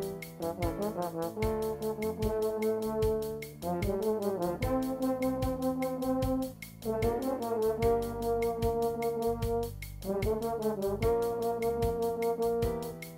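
Bass trumpet and trombone playing a slow bossa nova melody in two-part harmony, held notes changing every second or two, over a steady light beat.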